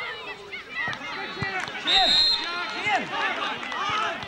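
Overlapping shouts of players and spectators, with a short, steady, high whistle blast from the referee's whistle about two seconds in.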